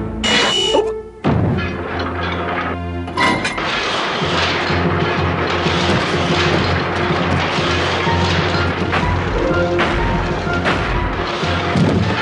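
Cartoon action soundtrack: dramatic music over heavy mechanical sound effects of giant gears and machinery. A few loud crashing impacts in the first three seconds, then a dense, continuous clanking din with occasional sharp hits.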